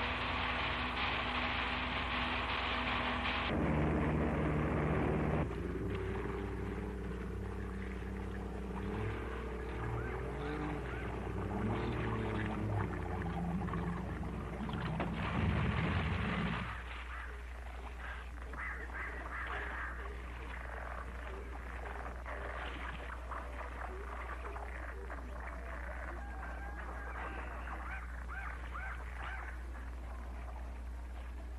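Motorboat engine running, its pitch changing about three and a half seconds in and cutting out about sixteen and a half seconds in. After it stops, many short frog calls go on over a steady low hum.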